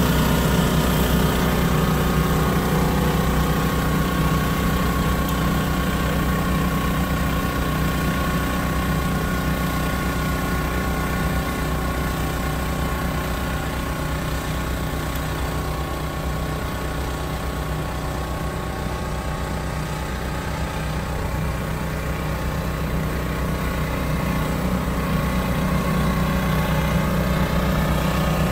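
Steady engine drone of the machinery driving a band-steam soil applicator as it works along the bed at a crawl, a hum of several steady pitches over a light hiss, easing a little in the middle and building again near the end.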